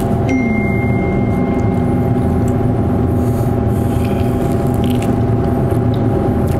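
Kitchen extractor hood fan running with a steady, unchanging hum.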